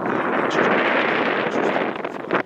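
Wind buffeting the camera's microphone: a loud, steady rushing noise with no pitch.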